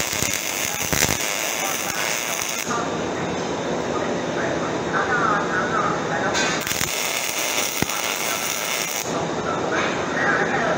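MIG welding arc crackling and hissing in two runs: one for about the first two and a half seconds, another from about six and a half to nine seconds, with a pause between while the gun is repositioned.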